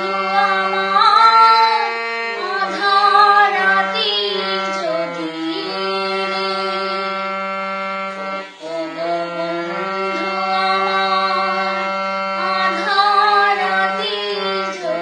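A woman singing a Bengali song with long held notes, with a brief breath pause about eight and a half seconds in.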